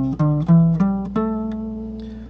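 Guitar played one note at a time in a rising scale run, about five notes, the last one left ringing and fading: a pentatonic scale pattern.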